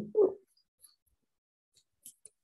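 A short, high voiced sound a quarter of a second in, then near silence: room tone.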